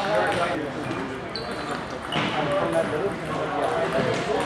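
Voices chattering in a busy table tennis hall, with scattered sharp clicks of celluloid table tennis balls being hit and bouncing on tables. There is a brief high squeak about a second and a half in.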